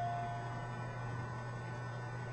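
Steady low electrical hum. A last held piano note fades out in the first half second.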